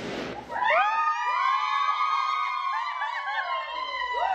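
A sudden pop as the confetti bursts, then several people shrieking and cheering in excitement, their high voices overlapping and wavering.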